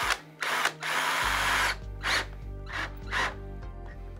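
Cordless drill-driver driving a large-headed screw through a hole in a porcelain toilet base into its floor bracket, run in a series of short trigger bursts with one longer run about a second in, gently snugging the screw so as not to crack the porcelain. Background music comes in about a second in.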